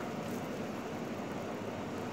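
Steady background noise, an even low rumble with no distinct events.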